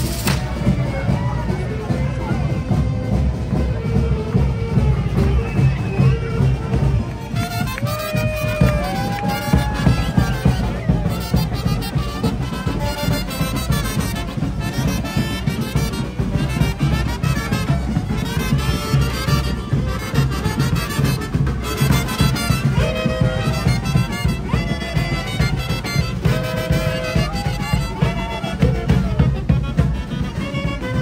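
Brass band playing a lively procession tune over a steady beat.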